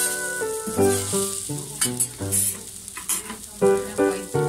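Okonomiyaki sizzling on a flat iron teppan griddle, under background music with a melody of separate short notes.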